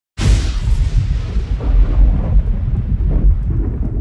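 Intro sound effect: a sudden loud boom about a fifth of a second in, its bright crash fading over the first couple of seconds while a deep rumble carries on.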